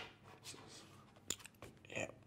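Quiet room with a few faint, brief clicks in a pause between lines of speech.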